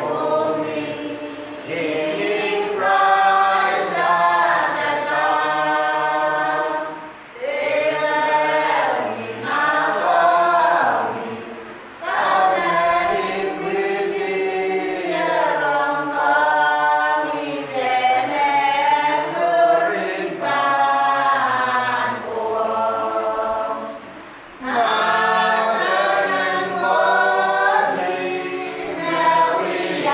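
A church congregation singing a hymn together in long, held phrases, with a few short pauses between lines.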